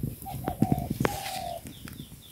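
A bird cooing: a few short steady notes and then one longer held note, over several sharp clicks and knocks.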